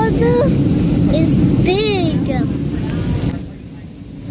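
Steady low rumble of an airliner cabin in flight, with a young child's high voice in gliding tones over it. About three seconds in there is a knock from the phone being handled, and the sound turns briefly quieter and muffled.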